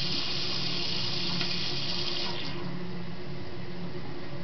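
Toilet with a push-button flush on the tank, water running steadily as it refills after the flush. The rushing hiss drops to a quieter, duller run about two and a half seconds in, as part of the refill stops.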